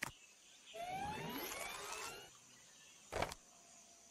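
Cartoon sound effect of a computer printer printing a picture: a click, then a whirring with rising tones for about a second and a half, then a short thump about a second later.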